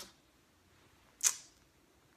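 A quiet pause in a man's talk, broken about a second and a quarter in by one short, sharp hiss: a quick breath drawn in through the mouth.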